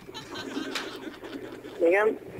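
Low murmuring background noise over a telephone line between spoken numbers, with faint indistinct sounds in it. A man's voice cuts in near the end.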